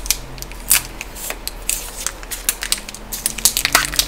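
Foil wrapper of a small chocolate being peeled open by fingers: a run of quick, irregular crackles and crinkles, thickening into a dense crinkle near the end.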